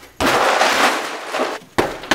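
A kick striking a rubber body-opponent training dummy: a sudden loud smack that trails off in noise over about a second and a half. A second sharp thud near the end is a kick landing on a freestanding punching bag.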